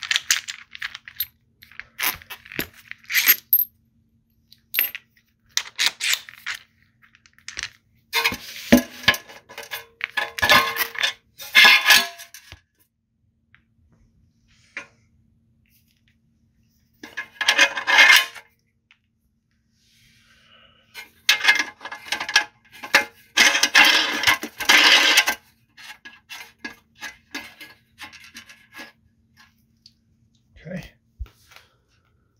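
Metal clinking, rattling and scraping as the parts of a chassis knockout punch are handled and fitted through a pilot hole in a sheet-metal enclosure. The sounds come as sharp clicks and several clattering bursts with quiet gaps between.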